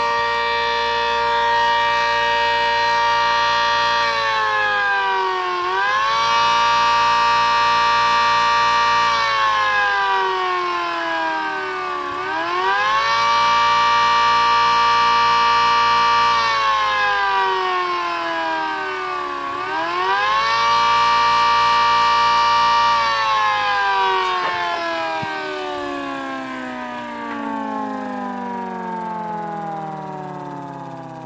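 Homemade 3D-printed 8/10-port siren, a copy of the ACA Hurricane 130 with a 120 mm rotor, spun by an electric motor and sounding a two-tone chord. It holds at full pitch, dips and climbs back three times, then winds down in a long falling slide over the last several seconds.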